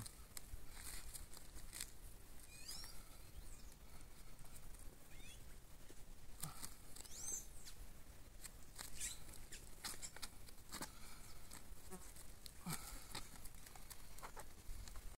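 Faint paper crinkling and rustling, in short irregular crackles, as a corn silage sample is rolled up tightly in paper by hand to press the air out. A few short bird chirps sound now and then.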